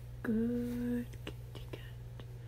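A person's voice giving one held, level hum or "mm" lasting just under a second, starting about a quarter-second in, followed by a few faint clicks over a low steady background hum.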